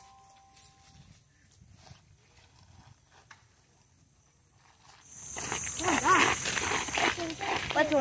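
Faint outdoor quiet for about five seconds, then people's voices talking over a steady high-pitched buzz.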